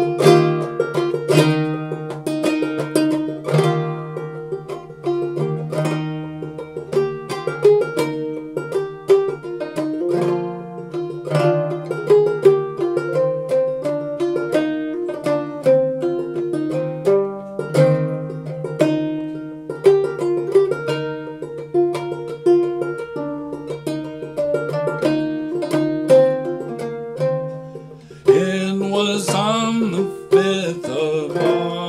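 Gold Tone banjo with a natural Balch head, Dobson tone ring and nylgut strings, played clawhammer style: a steady stream of plucked notes in a lilting 6/8 over a constant low drone. Near the end, a man's voice comes in singing over the banjo.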